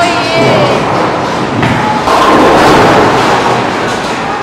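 Bowling alley sounds: a bowling ball rumbling along a wooden lane and pins being knocked down, loudest for about a second from two seconds in. A voice is heard briefly at the start.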